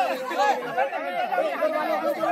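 Overlapping chatter from a group of people talking over one another.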